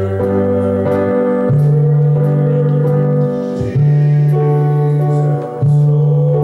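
Instrumental church music: held chords over a low bass line that moves to a new note every second or two.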